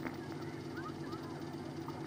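Steady low hum and hiss, with a few faint, short chirps scattered through it.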